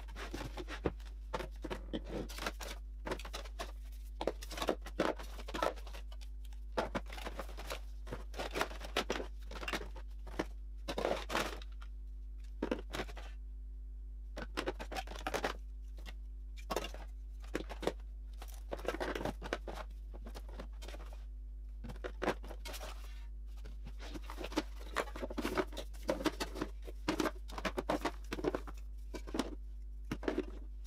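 Plastic bottles, tubes and spray cans of hair products handled and set down in a drawer: irregular clicks, knocks and short rustles, in quick runs with brief pauses.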